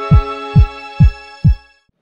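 Electronic intro sting: four deep heartbeat-like thumps, each dropping in pitch, about two a second, over a held synth chord that fades out near the end.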